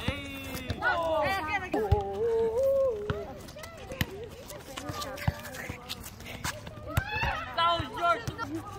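Players' voices calling out during a volleyball rally, one call drawn out, mixed with a few sharp slaps of the volleyball being hit.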